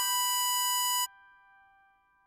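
Harmonica sounding a held draw note on hole 7 (B5), which stops abruptly about a second in. A faint soft chord lingers after it.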